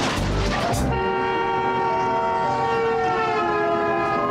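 A long, loud horn blast with several tones sounding together, starting about a second in. Its pitch drops around three seconds in, as a horn does when it passes by.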